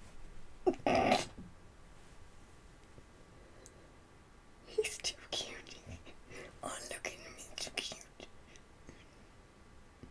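A young woman whispering and making breathy, excited sounds under her breath: one loud burst about a second in, then a run of short bursts from about five to eight seconds.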